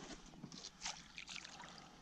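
Faint small splashes and trickling of water at the surface beside a kayak as a hooked largemouth bass is brought in, with a slightly louder splash about a second in.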